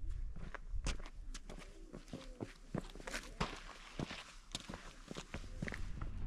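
Footsteps on bare sandstone with grit underfoot: an irregular run of light scuffs and taps as a person walks across the rock.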